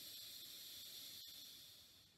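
A slow exhale through one nostril during alternate-nostril breathing: a steady, airy hiss that fades away near the end.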